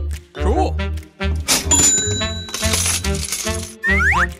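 Background music with a steady beat, over which a toy cash register rings up a sale: a high beep about a second and a half in, then a jingle of coins near three seconds.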